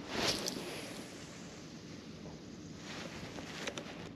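Faint, steady outdoor hiss over calm open water, with a brief rustle about a quarter of a second in and a few light clicks near the end.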